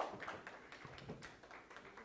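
Faint, irregular taps and clicks over quiet room noise.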